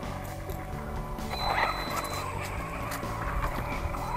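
Background music added to the video, with a brief wavering, rising-and-falling sound about a second and a half in that is the loudest moment.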